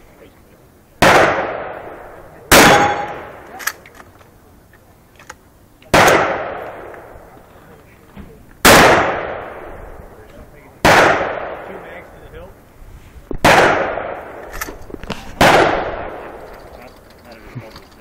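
Semi-automatic shotgun fired seven times at uneven intervals of roughly one and a half to three and a half seconds, each shot echoing and fading out. Small clicks and a faint clang come between some of the shots.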